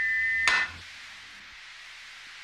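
A locomotive's stuck steam whistle, a steady shrill tone, cut off by a single hammer blow on the whistle valve about half a second in, knocking the jammed valve shut. After it only a softer hiss remains.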